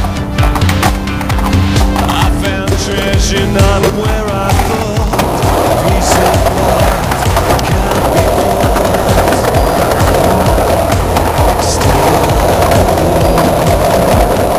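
Skateboard wheels rolling on concrete, a steady rumble that takes over about five seconds in, with music playing over the first few seconds.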